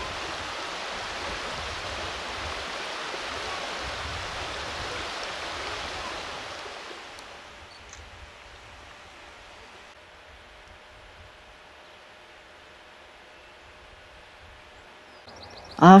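A river running over a shallow, stony bed: a steady rush of water that fades away about seven seconds in, leaving faint outdoor quiet.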